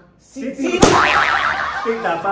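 A sharp whack about a second in, as of a plastic water bottle striking someone, followed by a wobbling comedy boing that lasts about a second.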